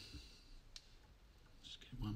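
Near silence: room tone, with one faint click about a second in and a few faint ticks near the end.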